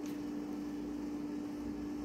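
Steady low hum under faint room noise, with no distinct knocks or calls.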